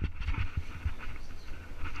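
Irregular low rumbling from a body-worn camera's microphone being jostled during a rope descent, with faint scraping and rustling over it.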